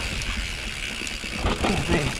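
YT Capra enduro mountain bike rolling down a dry dirt trail: tyre noise and rattles and clicks from the bike over the bumps, with a steady high buzz from the rear freehub while coasting. A low wind rumble on the helmet camera's microphone sits under it.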